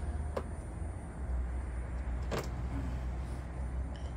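Steady low outdoor rumble, with two short clicks, one about half a second in and one near the middle.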